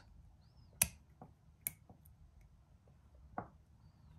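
A few small, sharp clicks of jewelry-making tools and metal findings being handled on a work surface: a loud click just under a second in, another nearly two seconds in, fainter ticks between them, and a duller tap near the end.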